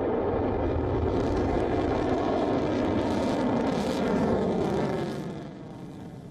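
Missile in flight, its rocket motor making a steady low rumble that fades away about five seconds in.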